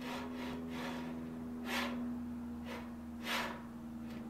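Skateboard ball bearings rolling along an aluminium square tube as a linear-bearing carriage is pushed back and forth by hand. The sound comes as soft whooshing strokes, the strongest about halfway through and near the end, over a steady low hum. Nothing is dragging: what is heard is only the bearings themselves rolling.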